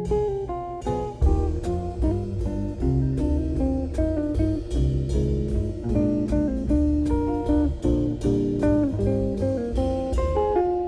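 Instrumental recording of a bourrée played on plucked acoustic guitars, several lines of quick, even notes moving together over a low bass line.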